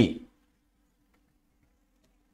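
A man's spoken word ends at the very start, then near silence with only a faint steady hum.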